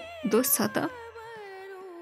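A woman's voice speaking a single word in Nepali, over soft background music whose sustained melody line glides slowly up and down through the pauses.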